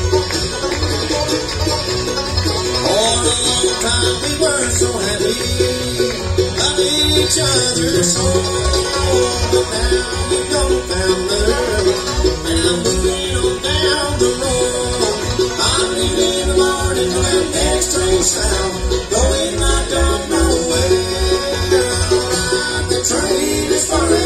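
A live bluegrass band playing: rapid five-string banjo picking over an upright bass keeping a steady beat, with another acoustic string instrument. A voice comes in singing about ten seconds in.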